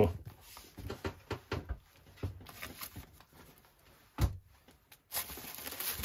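Paperback manga volumes being handled and set down: scattered light knocks and rustles of books against each other, with a louder knock about four seconds in.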